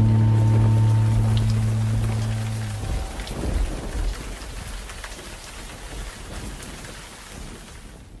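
Last chord of a band on bass and acoustic guitar ringing out, cut off abruptly about three seconds in. Under it, a steady rain-like hiss with scattered crackles that fades away slowly.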